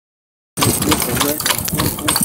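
Horse-drawn metal-frame cart rolling along a dirt road, its steel frame and hitch rattling with many quick clicks and knocks over the rumble of the wheels, with the horse's hoofbeats mixed in. The sound starts abruptly about half a second in.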